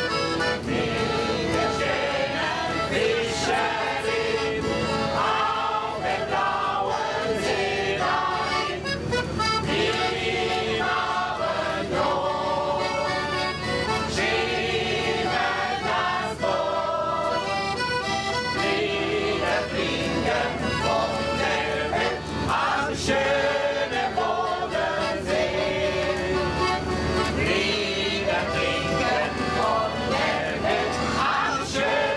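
Piano accordion playing a song while a group of people sing along together, with hands clapping along.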